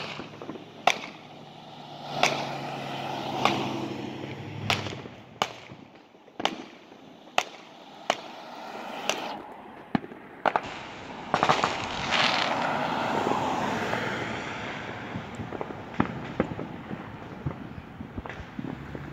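Aerial fireworks going off in the distance: a string of sharp bangs, roughly one a second. About two-thirds of the way in comes a denser stretch of rapid crackling pops.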